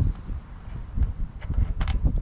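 Plastic clicks and knocks as a small engine's air filter housing is pressed onto the carburettor, a couple of sharp clicks in the second half, over an uneven low rumble of wind on the microphone.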